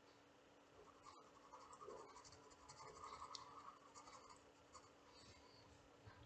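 Faint, irregular scratching of a pencil on sketchbook paper as small spots are drawn. It starts about a second in and dies away near the end.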